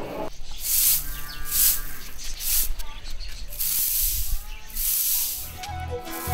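A stiff twig broom sweeping grain across a concrete floor: about five separate swishing strokes. Music with a deep bass line comes in near the end.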